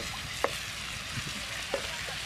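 A beef and cauliflower stir-fry sizzling in a frying pan while being stirred with a spatula, with two sharp knocks of the spatula on the pan, the louder about half a second in.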